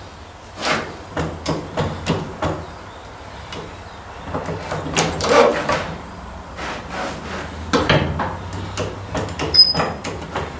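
Heavy metal-on-metal clunks and knocks from a tractor's front axle beam being shifted and worked into its mounting bracket on a jack, with a longer scraping stretch about halfway through and a brief metallic ring near the end.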